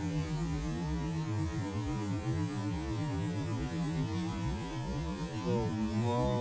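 Motorcycle engine running at low speed in slow traffic, a steady hum whose pitch wavers slightly as the throttle changes.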